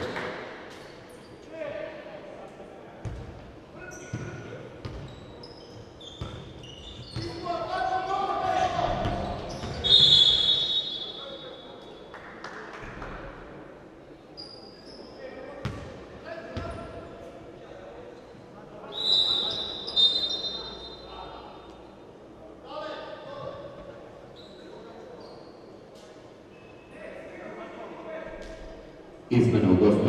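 Live game sound of a basketball being bounced on a wooden court in an echoing sports hall, with players' shouts and brief high squeaks of shoes on the floor about ten seconds in and again around twenty seconds.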